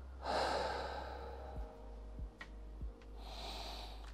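A person breathing deeply while holding a seated forward-fold stretch: two long, soft breaths, one at the start and another near the end, with a few faint low knocks in between.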